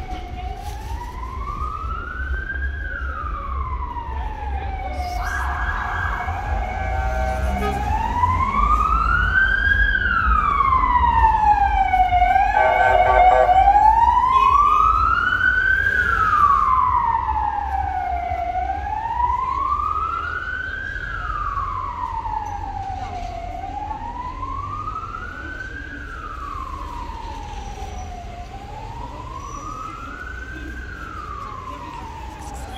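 Emergency-vehicle siren wailing, its pitch rising and falling slowly about every five to six seconds, growing louder toward the middle and then fading away. A steady horn-like blast cuts in twice, about six and thirteen seconds in. A low traffic rumble runs underneath.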